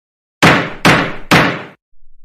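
Three loud wooden knocks about half a second apart, each ringing out briefly: a judge's gavel striking the bench as a sound effect.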